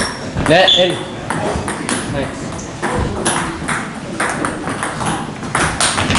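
A table tennis rally: the ball clicking sharply off paddles and the table, hit after hit. A voice calls out briefly about half a second in.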